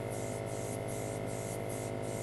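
Steady hiss with a low hum from an airbrush's air supply running, with no strokes or breaks in the flow.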